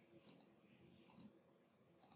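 Near silence with faint computer mouse clicks: two quick pairs of clicks about a second apart.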